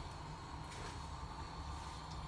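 Faint steady background noise, a low hum or hiss, with no distinct events.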